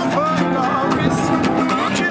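Guitars playing together in a jam: an acoustic guitar, a resonator guitar and an electric guitar, with several notes gliding up and down in pitch.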